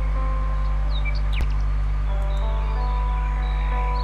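Steady background music with short bird-like chirps mixed in, and a single faint click about a second and a half in.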